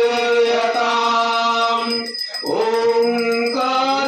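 Hindu devotional mantra chanting in long, steady held notes, broken briefly about two seconds in.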